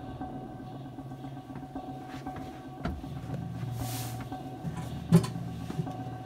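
Steady low hum of a submarine compartment, with a few footsteps and knocks on the steel as someone steps through a watertight hatch. The loudest, sharp knock comes about five seconds in.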